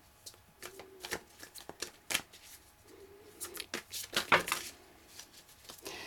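A deck of tarot cards being shuffled by hand: a run of sharp card clicks and flicks at irregular intervals.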